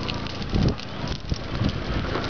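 Forest fire crackling in burning vegetation, with wind buffeting the microphone in low gusts, the strongest about half a second in.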